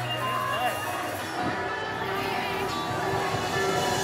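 Live rock band's amplified electric guitar and stage gear holding sustained, ringing tones, with voices mixed in.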